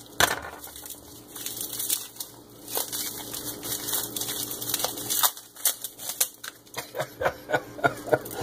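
Plastic bagging and packing tape crinkling and crackling as hands pick at a small taped package, in a run of quick, irregular crackles.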